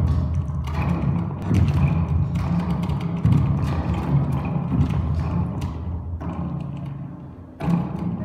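Orgue de bois, an experimental instrument of long bent wooden arches strung with cords, played by hand: a sustained low droning hum with knocks and thumps from the wood, several in the first few seconds and a loud one near the end.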